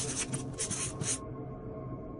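Soft background music, with a short scratchy, rustling noise in a few quick pulses over about the first second.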